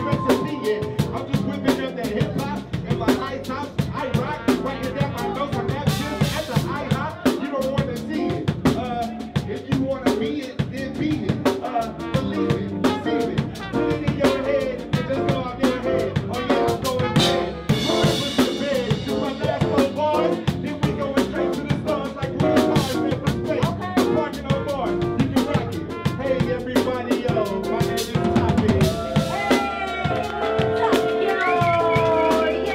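Live hip-hop beat with no rapped words: a fast, steady drum pattern of kick, snare and rimshot sounds over sustained bass and keyboard tones.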